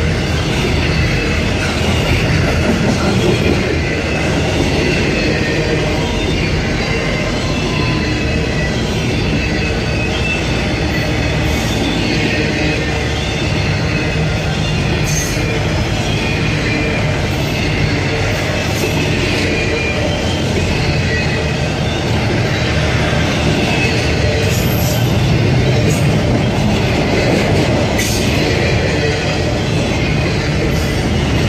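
Trailer-on-flatcar intermodal freight train rolling past close by: a steady, loud rumble of steel wheels on rail, with faint wavering high-pitched wheel squeal.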